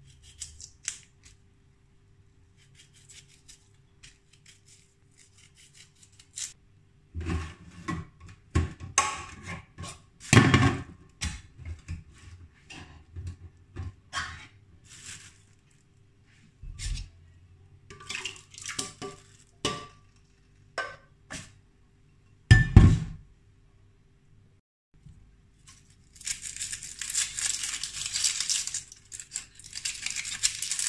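Kitchen prep handling on a stainless steel counter: scattered knocks, clinks and rustles of a knife, a tin, a plastic bowl and a plastic bag. The loudest knocks come about a third of the way in and about three quarters through, over a faint steady hum. Near the end there is a dry, dense crackling rustle of onion skin being peeled with a knife.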